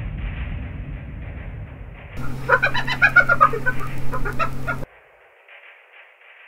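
Background music fading away, then a short laughing 'ha ha' sound clip: a quick series of high calls falling in pitch, over a steady low hum, starting about two seconds in and cut off abruptly near the five-second mark.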